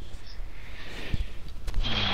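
Steady low electrical hum from a computer microphone, with a couple of short clicks past the middle and a breathy rush of noise just before the end.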